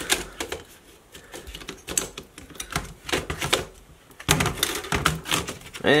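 Scattered small plastic clicks and knocks from a Dell Inspiron Mini 10 netbook's motherboard being pried and worked loose from its plastic chassis, with a louder, busier run of clicks about four seconds in.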